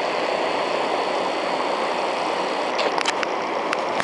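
River water rushing steadily past the old mills, with a few sharp clicks about three seconds in.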